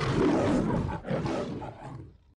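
A lion's roar sound effect in two surges, the second starting just after a second in and fading out near the end.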